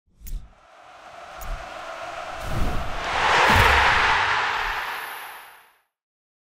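Intro sound effect under a title card: a swelling whoosh of noise over low thumps about once a second. It builds to a peak a little past halfway, then fades out.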